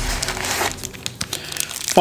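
Thin plastic packaging crinkling and crackling as it is handled, busiest in the first half-second or so, then softer.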